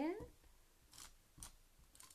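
Blue handheld glue applicator scraping over card paper as adhesive is spread across a papercraft panel: two short scratches, about a second in and again half a second later.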